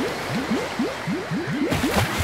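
Cartoon bubbling sound effect as a submarine goes under: a quick run of short rising 'bloop' glides, about four a second, over a light water hiss, ending with a brief whoosh.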